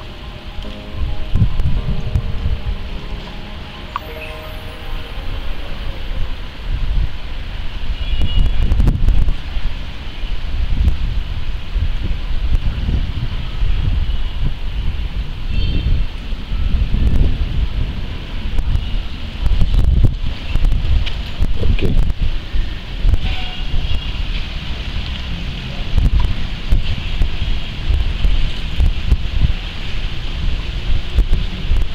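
Wind buffeting the camera microphone in uneven gusts, a loud low rumble that comes and goes, with background music faintly beneath it.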